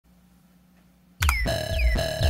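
Near silence with a faint hum, then a little over a second in a cheesy techno track programmed on a Dirtywave M8 tracker starts abruptly and loud. It has a deep bass beat, a steady synth tone and repeated falling synth chirps.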